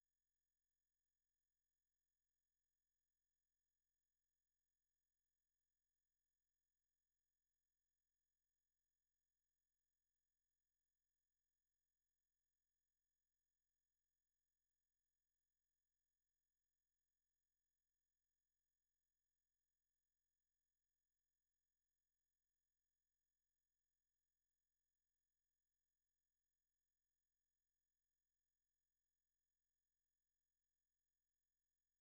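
Near silence: the sound track is digitally silent, with no sound at all.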